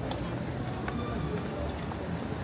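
Footsteps on a wet stone pavement, a sharp step about every half second, over a steady city-street hubbub of voices and low rumble.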